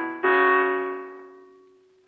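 Background film music: a keyboard chord is struck about a quarter second in, over the fading tail of the one before, and dies away slowly.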